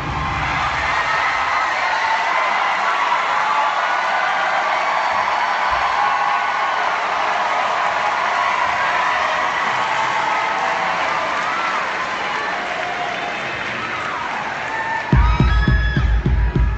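Concert crowd applauding and cheering, with scattered whoops, between songs of a live recording. About 15 seconds in, a song with a heavy bass beat starts.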